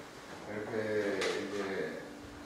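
A man speaking at a desk microphone.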